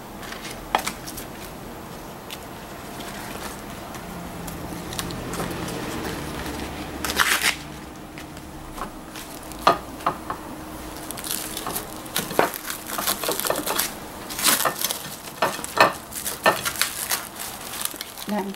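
Banana leaves and plastic film rustling and crinkling as they are folded and pressed by hand around a roll of raw ground beef. Scattered crackles at first, with a brief louder rustle about seven seconds in, then busier crinkling through the second half.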